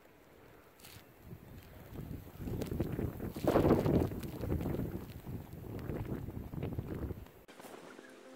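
A gust of wind buffeting the microphone: a rough rumble that builds from about a second in, is loudest near the middle, and eases off before cutting out suddenly near the end.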